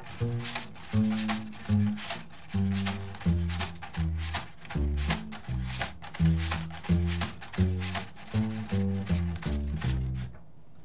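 Wire drum brush stirred and struck on a skin drum head fitted to the body of an upright bass, playing a steady snare-like beat in place of a snare drum, with low bass notes changing about twice a second.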